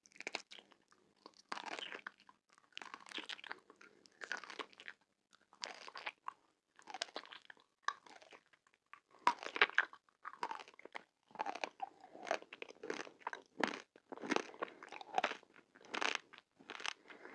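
Close-miked crunching and chewing of small, hard, round candy beads bitten from a clear tube, in irregular bursts of crisp crunches about once a second.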